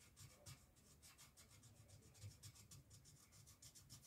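Very faint scratching of a marker tip colouring on a wooden skateboard deck, in quick short strokes, several a second.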